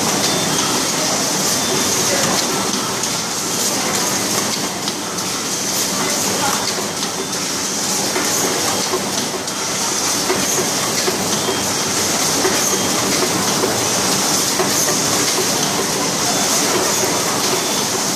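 Automatic rigid box making machine running in production: a steady dense mechanical clatter of many small clicks with a constant hiss.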